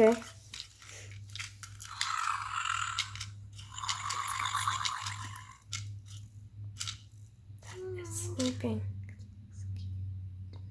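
Fingerlings Untamed dinosaur toy's electronic sleep sounds as it is cradled: two long, rasping breaths, each over a second, then a short voice-like call near the end.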